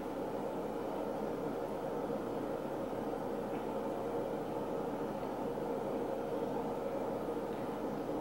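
Steady background hum and hiss of room noise, even throughout, with no distinct events.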